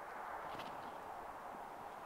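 Quiet, steady outdoor background hiss, with a faint brief scuff about half a second in.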